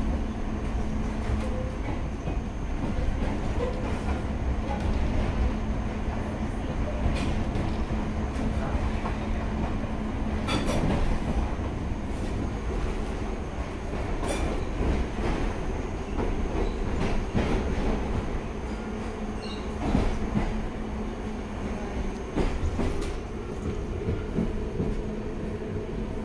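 Piccadilly line 1973 Tube Stock train heard from inside the carriage while running: a steady rumble of wheels on rail with irregular clicks and knocks over the rail joints.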